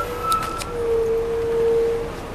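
Interior of a 2002 MCI D4000 coach with a Detroit Diesel Series 60 engine under way: a steady whine that dips slightly in pitch about halfway and then holds, over low engine and road rumble. A higher, fainter whine sounds through the first part, with a few light rattles.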